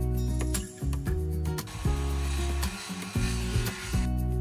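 Background music with a steady, repeating bass line. A noisy rasp comes through the music from about two seconds in until just before the end.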